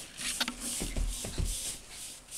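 Paintbrush swishing on a wall in quick, even back-and-forth strokes, with a few low bumps from the camera being handled around the middle.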